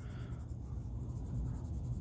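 Pencil moving over paper while shading a drawing: a quiet, steady scratching.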